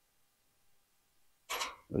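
Near silence, then about a second and a half in a short throat-clearing noise from a man, right before he starts to speak.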